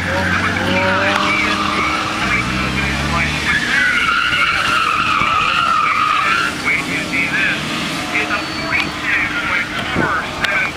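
Car tyres squealing through hard cornering on a cone course, with the engine audible in the first few seconds; one long, wavering squeal runs from about four to six and a half seconds in.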